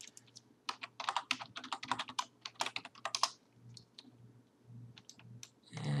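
Computer keyboard keys clattering in a quick run of taps, then a few scattered single clicks, over a faint low hum.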